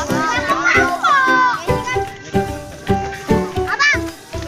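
Children's voices shouting and chattering over steady background music, with high calls around one second in and again near the end.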